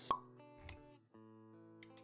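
Logo-animation sound effects over music: a sharp pop just after the start, a short whoosh about halfway through, then a held musical chord with a few light clicks near the end.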